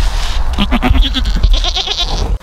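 Goat bleating up close: a wavering, broken call from about half a second in to near the end, over a low rumble on the microphone.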